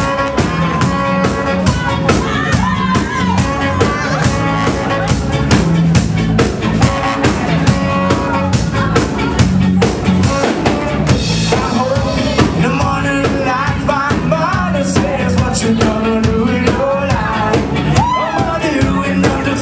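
A ska band playing live: saxophone and a brass horn carry held melody lines over electric guitars, bass and a steady drum-kit beat.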